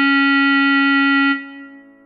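B♭ clarinet holding one long written D (a whole note), which stops about a second and a half in and leaves a fading tail.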